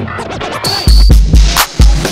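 Electronic dance music mixed live from vinyl turntables, with record scratching. The heavy kick drum drops out at first and comes back in just under a second in, then hits steadily.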